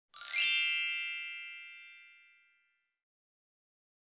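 A bright chime sound effect: a quick upward sweep of ringing tones that settles into one ding, fading out by about two seconds in.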